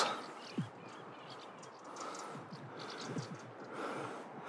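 Quiet outdoor ambience: a faint steady hiss with a few faint, brief sounds scattered through it.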